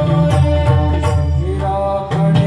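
Live Marathi devotional bhajan: a male voice singing over sustained harmonium notes, with regular pakhawaj drum strokes.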